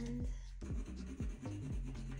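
Watercolor pencil scratching and rubbing across watercolor paper, over background music with a steady low beat.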